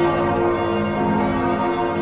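Several church bells ringing together, their strikes overlapping into long sustained tones.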